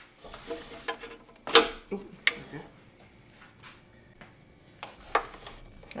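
Hands working a power wire through a rubber firewall grommet: faint rustling and handling noise with a few sharp clicks, the loudest about a second and a half in.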